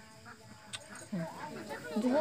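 A chicken clucking in short calls that start about a second in, after a near-quiet opening with one small click.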